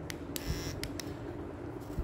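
Handling noise from a metal-bodied cordless hair clipper turned over in the hands: a brief scrape about half a second in, then a few small clicks.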